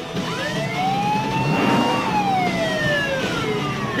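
Police car siren sounding one slow wail, rising in pitch for about two seconds and then falling away.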